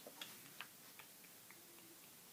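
Near silence: quiet room tone with a few faint, short ticks.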